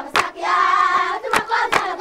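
A group of children singing together in a local language, with sharp hand claps near the start and twice more late on. A fuller burst of many voices comes about half a second in.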